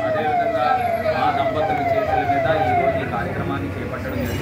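An electronic siren sounding a repeated falling wail, about two sweeps a second, over crowd chatter. It stops about three seconds in.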